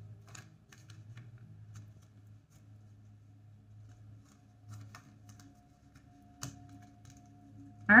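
Faint scattered clicks and light taps of tarot cards being handled and laid out, with one sharper click about six and a half seconds in, over a low steady hum.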